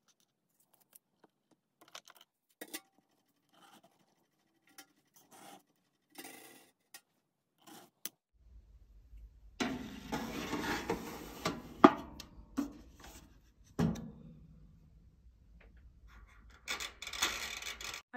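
Faint scattered taps and clicks of a tool and fingers working polymer clay on a work board. Then a metal baking tray scrapes and clanks as it is slid into a small countertop toaster oven, with two sharp clanks. Near the end comes a burst of noise as the oven's timer dial is turned.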